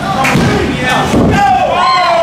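Several people shouting and yelling over one another at a wrestling match, with a few sharp knocks among the voices.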